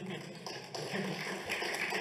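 A pause in a talk in a conference hall: room noise with faint, indistinct voices from the audience.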